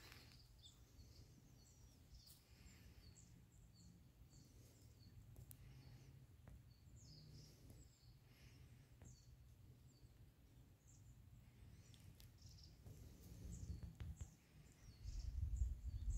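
Faint outdoor quiet: small birds chirping in scattered short notes over a low steady rumble. Near the end a louder, uneven low rumble comes in.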